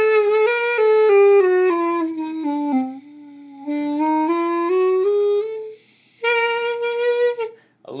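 Homemade carrot clarinet: a carrot bored with six finger holes and a thumb hole, played with an alto saxophone mouthpiece and reed. It plays a scale stepping down note by note and back up, then, after a short break, one long held note. Some notes are a little flat or sharp.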